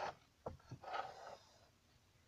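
Handling noises: a sharp knock about half a second in, a lighter one just after, then a short rustle, after which it goes quiet.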